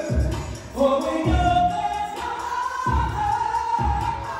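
A woman singing into a handheld microphone, amplified over a music accompaniment with a low beat, including long held notes.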